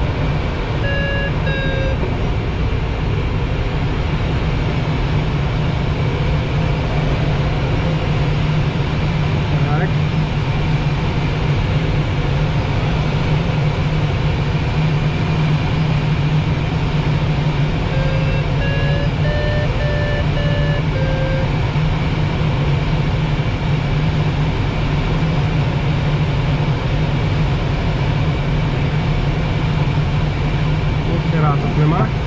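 Steady rush of airflow over an L-13 Blaník glider in flight. A variometer gives short runs of electronic beeps near the start and again about 18 to 21 seconds in, stepping up and then back down in pitch as the glider meets a little lift.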